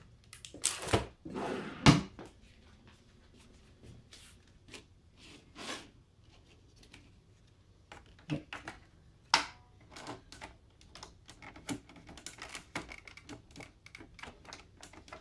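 4×6 inch photo paper being handled and slid into an inkjet printer's rear paper feed: paper rustling and sliding with a run of small plastic clicks and taps from the feed's paper guide. The loudest rustles come about a second in.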